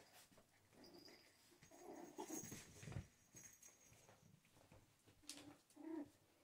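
Faint, short whimpers and squeaks from young puppies play-wrestling, a few around a second or two in and again near the end, with a soft thump about three seconds in.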